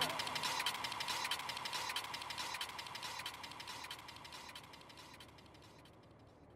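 The faint tail of an electronic hardcore track after its final hit: a crackling hiss with rapid faint ticks and a thin steady tone, fading away to silence about five seconds in.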